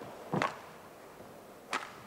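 Two sharp hits of a badminton racket on the shuttlecock during a rally, about a second and a half apart.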